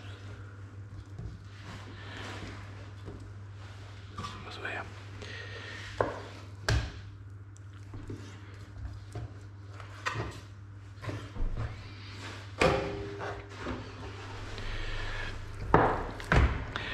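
Boning knife cutting and trimming raw pork shoulder on a cutting board: scattered knocks of the blade and meat against the board, over a steady low hum.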